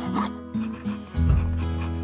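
Background music, with the last few quick strokes of a handsaw finishing a cut through a wooden board at the start. A deep bass note comes into the music about a second in.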